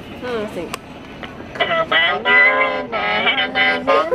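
A boy singing into a toy microphone: a short gliding note near the start, then a run of long, drawn-out notes from about a second and a half in.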